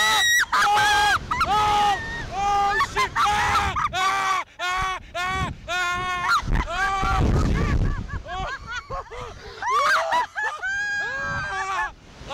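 A woman and a man screaming again and again, long high-pitched shrieks and yells, as they are flung up and down on a slingshot (reverse-bungee) thrill ride.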